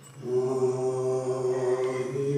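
A steady held chanted note begins about a quarter of a second in and holds at one pitch: the opening of Sikh devotional chanting (kirtan) after the Fateh greeting.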